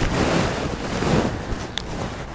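Rustling and brushing noise on the microphone as the person moves close to it, with a brief click near the end.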